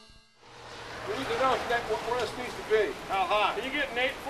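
Indistinct voices of several people talking outdoors over a steady hiss of rain on a wet street.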